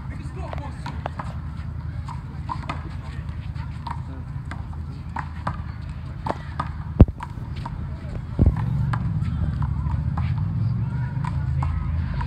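Players talking indistinctly on an outdoor handball court over a steady low rumble, with sharp smacks of a rubber handball. The loudest smack comes about seven seconds in and another about a second and a half later.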